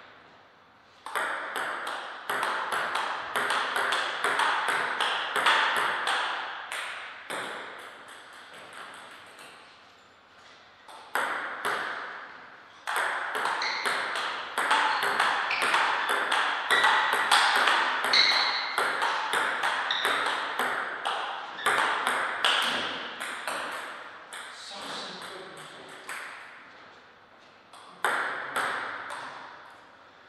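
A table tennis ball being hit back and forth: runs of sharp clicks of the celluloid-type ball on rubber paddles and on the table top during rallies, with short pauses between points. A broad noise rises and falls beneath the clicks.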